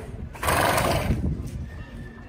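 A horse blowing air out through its nostrils: one breathy burst lasting about a second, starting about half a second in.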